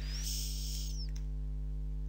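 Steady electrical mains hum on the recording, with a brief soft hiss about half a second in.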